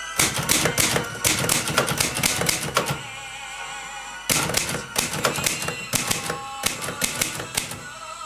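Manual typewriter typing: rapid keystrikes in two runs, the second starting after a pause of about a second and a half, over faint background music.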